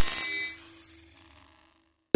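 Electronic glitch sting for an animated logo: a sharp hit with buzzing high tones that fade out within about half a second.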